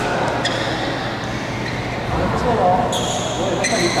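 Badminton rally: three sharp racket strikes on the shuttlecock, each with a short ringing ping, echoing in a large hall with voices in the background.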